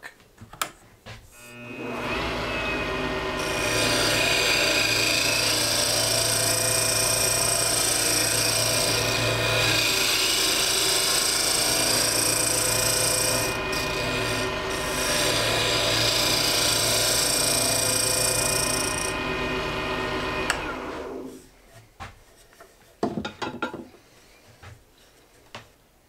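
A wood lathe spins up, and a hand tool cuts into the turning hardwood duck call blank: a steady scraping hiss over the motor's hum, taking more wood out of the mouthpiece. About five seconds before the end the cutting stops and the lathe winds down, followed by a few light knocks.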